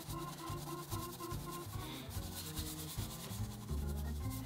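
Mop brush scrubbing a watery black acrylic wash into carved EVA foam: a soft, continuous brushing rub.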